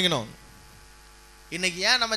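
A man preaching in Tamil breaks off. In the pause a steady, low electrical hum is heard, and his speech starts again about one and a half seconds in.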